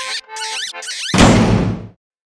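Cartoon squeak sound effects in short, choppy bursts, sliding up and down in pitch. About a second in, a loud, sudden burst of noise cuts in and dies away in under a second.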